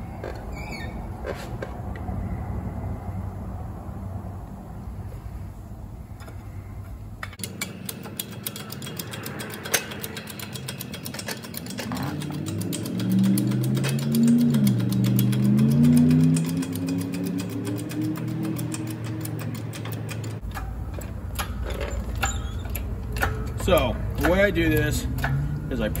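Hydraulic bottle jack of a 20-ton shop press being hand-pumped, with many fine clicks as the handle is worked, loading the ram down onto a powder-pucking die. In the middle a loud, low, wavering tone rises over the pumping.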